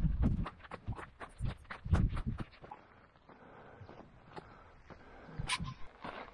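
Footsteps crunching on a rocky dirt trail: a quick run of uneven steps for the first couple of seconds, a quieter stretch, then a few sharp steps near the end.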